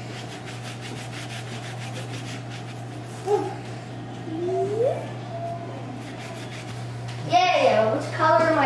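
Cloth rubbing over an inked plexiglass drypoint plate, wiping back the surface ink, as faint repeated strokes over a steady low hum. There is a short vocal sound about three seconds in, a rising hum of a voice a little later, and speech just before the end.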